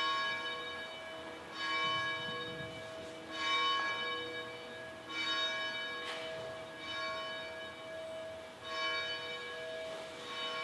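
Church bell tolling slowly, about six strokes roughly a second and a half to two seconds apart, each ringing on under the next. It is a memorial toll for a minute of silence marking the second plane's strike on September 11.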